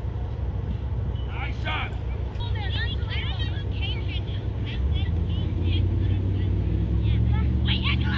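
A steady low engine hum from a motor vehicle, growing louder about five seconds in, under scattered distant shouts of children playing soccer.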